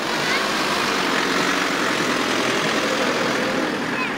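Steady engine noise from a Mercedes fire-brigade van standing close by, with a child's voice faintly heard near the start.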